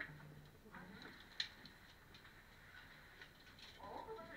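Near silence in a cave passage, with a few faint clicks, the sharpest about one and a half seconds in.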